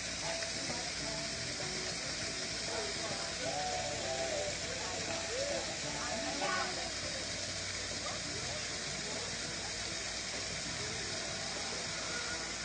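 Steady hiss of water falling from a small waterfall into a pond, with faint voices of other people in the background.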